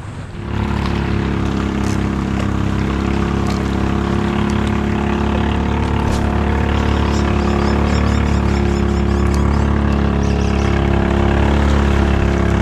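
An engine running steadily at an even, unchanging pitch, starting abruptly about half a second in.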